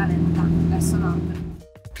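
1979 Volkswagen LT van's engine running with a steady drone as heard inside the cab while driving, fading away about one and a half seconds in.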